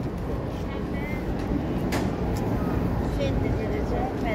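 Busy outdoor ambience: people talking in the background over a steady low rumble, with one sharp click about two seconds in.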